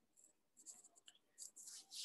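Near silence: room tone with a few faint, scattered soft ticks and rustles.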